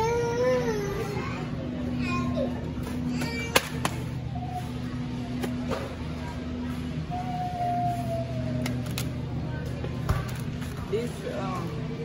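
Supermarket ambience: a steady low hum with faint store music and scattered distant voices, broken by a sharp click about three and a half seconds in and a couple of smaller clicks later.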